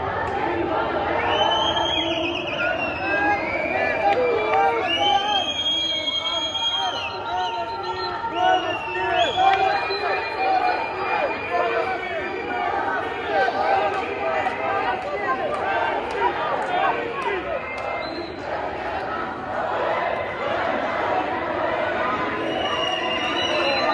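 A crowd of many voices shouting together, with some long, held high-pitched calls rising above it.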